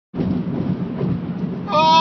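Steady road and engine noise of a truck driving at speed. Near the end a high-pitched voice starts crying out.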